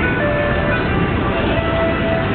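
A simple chime-like electronic melody of a few held notes, over the steady noise of a busy street and crowd.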